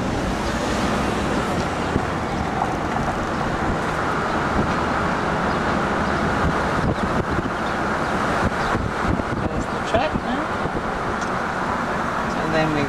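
Steady road and wind noise heard from inside a moving car: an even rushing that holds at the same level throughout.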